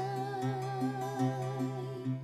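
A woman holding one long sung note with vibrato, fading near the end, over an acoustic guitar playing a steady low bass note and a repeating picked pattern of about two to three notes a second.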